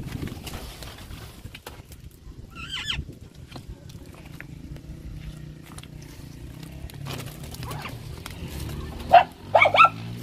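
Caged birds calling in an aviary: one short wavering call about three seconds in, and a few loud calls near the end, over a low steady hum with light scattered clicks.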